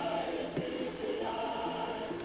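A choir singing, with sustained notes that change every half second to a second.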